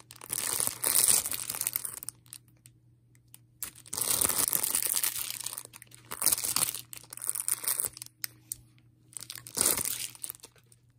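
Crinkly plastic-foil sachets from a Miniverse mini food kit being handled and squeezed in the hand, crinkling in several short bursts with quiet pauses between them.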